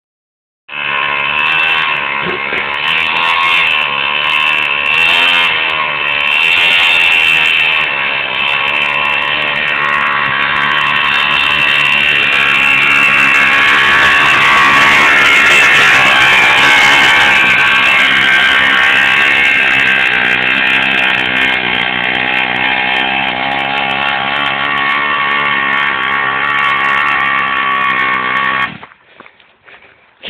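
Mini moto's small two-stroke engine running at a steady buzz, its pitch wavering a little with the throttle, until it cuts off suddenly near the end.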